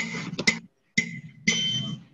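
Electronic keyboard notes of a five-finger exercise played by a student and heard through a video call. The notes come in three short spurts that start sharply, with brief gaps between them.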